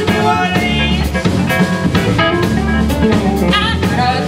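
Live band playing a zydeco-blues number, with electric guitar, keyboard, bass and drum kit keeping a steady beat.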